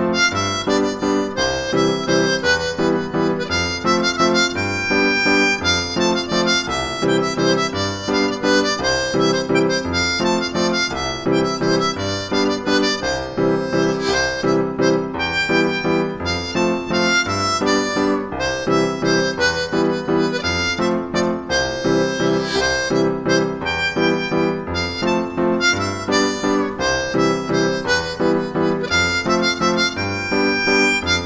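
Diatonic harmonica in C, a metal-bodied Dortel, playing a traditional Bourbonnais folk tune at full tempo: a quick, continuous run of short notes with jumps between them.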